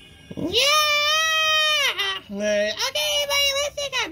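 A high-pitched vocal call: one long held note starting about half a second in that rises, holds and drops away, followed by several shorter wavering calls.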